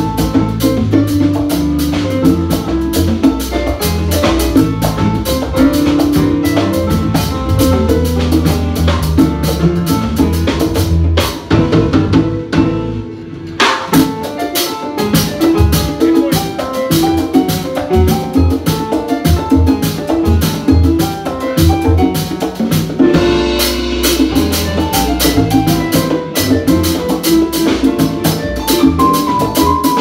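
A live Latin jazz band playing a piano guajeo over bass, drum kit and hand percussion. About eleven seconds in, the bass and drums drop out for a two-second break, and the full band comes back in.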